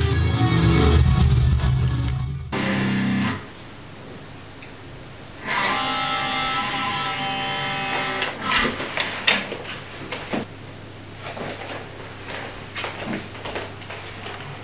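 Electric guitars playing the closing chords of a metal instrumental. A loud chord rings out, cuts off, and about five seconds in a single held chord rings and fades. Scattered knocks and clicks follow over a low steady hum.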